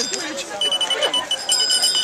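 Race chip-timing system beeping at the finish line: a rapid string of short, high electronic beeps at one pitch, starting about half a second in and lasting about a second and a half, as a runner crosses the timing mat. Voices talk in the background.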